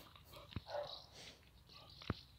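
Two dogs play-fighting, heard faintly: a sharp tap about half a second in, followed by a short, soft vocal sound from one of the dogs.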